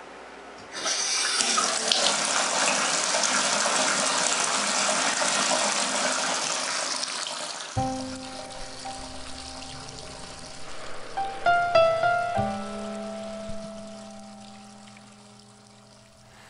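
A tap is turned on about a second in and water gushes into a basin, then dies away. About halfway through, the song's intro comes in under it: a held low note, a few higher notes, then a sustained low tone that fades toward the end.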